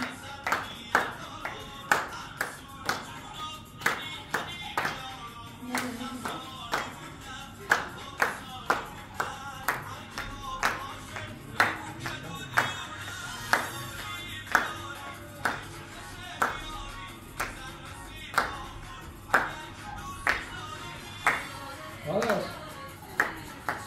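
Hands clapping in a steady rhythm, about two claps a second, keeping time for a dance, with music playing underneath.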